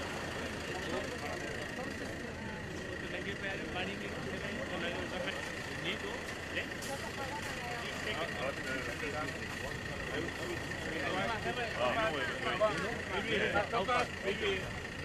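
Indistinct chatter of several voices, with no clear words, over a steady high-pitched machine whine and low hum. The voices grow louder and livelier from about eleven seconds in.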